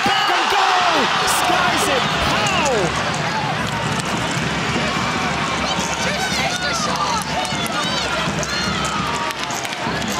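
Stadium crowd noise with many voices shouting over one another, loudest in the first three seconds as play goes into the goalmouth, then settling to a steadier level with scattered shouts. A single sharp thud sounds about a second in.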